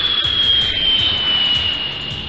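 Jet-engine flyby sound effect for a spaceship passing overhead: one steady high whine that falls slowly in pitch, over background music.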